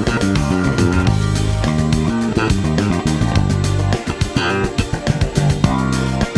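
Segra Jazz Bass played fingerstyle, a smooth line in C minor: quick plucked runs around two long held low notes, about one and two and a half seconds in.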